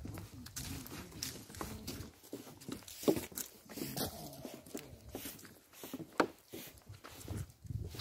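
Footsteps of people walking, with irregular knocks and rustles.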